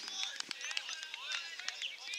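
Distant, indistinct calling and shouting from players across an open football oval, heard as short broken voice sounds with scattered sharp clicks among them.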